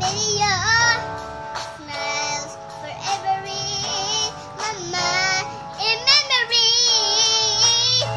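A young girl singing a slow pop ballad over an instrumental backing, her held notes wavering in pitch.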